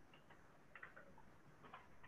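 Faint computer keyboard keystrokes, a few scattered clicks in near silence.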